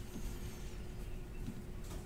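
Quiet room tone: a faint steady hum over low background noise, with no distinct handling sounds.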